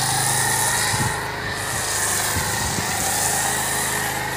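Pressure washer running with a foam cannon, spraying soap foam onto a car: a steady hiss of spray over the washer's motor hum. The hiss briefly drops off about a second in.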